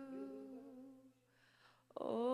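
A woman's voice sings a single held note into a handheld microphone, steady in pitch, fading out about halfway through. After a short near-quiet gap, a brief noise comes just before the next sung note begins at the very end.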